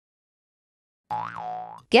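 Cartoon 'boing' sound effect about a second in, its pitch rising and then falling, marking the transition to the next quiz slide.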